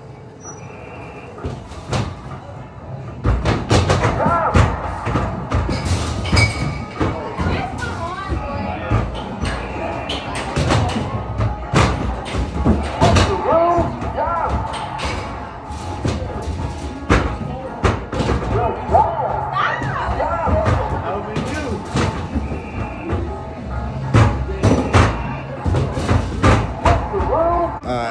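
Basketballs thudding against the backboards and rims of arcade basketball shooting machines, a rapid run of impacts starting about three seconds in, over the machines' music and the arcade's background noise.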